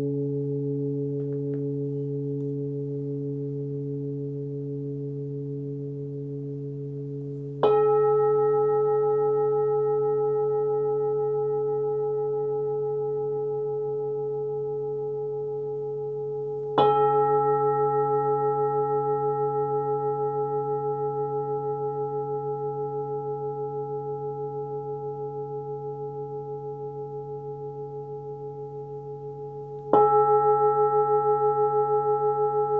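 Hand-forged singing bowl, 26.7 cm across with a 137 Hz (C#) fundamental, ringing with a low hum and several overtones. It is struck again about 8 seconds in and about 17 seconds in, and each strike swells the ring, which then fades slowly with a slight pulsing. A third strike lands at the very end.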